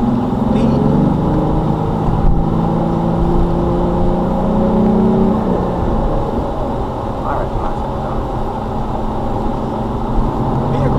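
Car engine and road noise heard from inside the cabin as the car accelerates, the engine note rising steadily for about five seconds and then dropping back.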